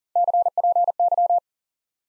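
Morse code at 40 words per minute, a single steady beep keyed on and off, sending CPY, the ham-radio abbreviation for 'copy': three quick letter groups lasting a little over a second.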